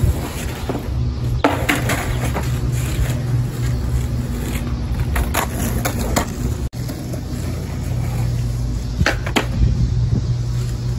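Skateboard rolling on rough, cracked asphalt, with sharp clacks from the board and wheels: one about a second and a half in, a cluster around the middle, and two near the end. Underneath runs a steady low rumble.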